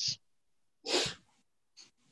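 A single short, breathy burst of noise from a person on a video-call microphone about a second in, with a faint click near the end.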